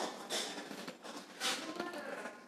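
Faint, indistinct voices talking in the background, with two short bursts of hiss, one about a third of a second in and one about a second and a half in.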